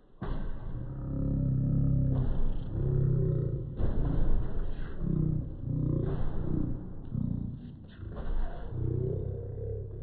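A man's voice making low, drawn-out vocal sounds without clear words, in about seven stretches separated by short breaks.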